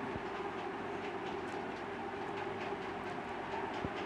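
A steady low hum and hiss of background noise, with a couple of faint clicks near the start and near the end.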